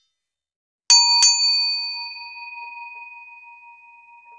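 Notification-bell sound effect of a subscribe animation: a bright bell struck twice in quick succession about a second in, then ringing on and slowly fading.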